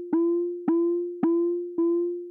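Frap Tools CUNSA resonant bandpass filter rung by clock triggers into its audio input: a pitched ping about twice a second, four in all, each a single steady note that decays away, with brief brighter overtones at each strike.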